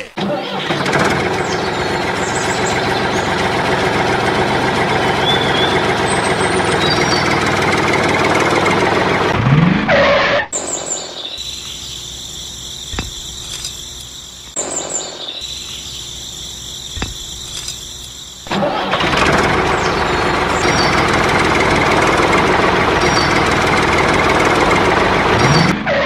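Toy tractor's motor running steadily with an engine-like sound. It drops away for about eight seconds in the middle, leaving a few small clicks, then runs again. A short rising sweep comes near the middle and again at the very end.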